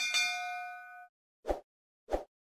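Notification-bell ding sound effect: a bright metallic chime with several ringing tones that fades away over about a second. A short soft pop follows near the end.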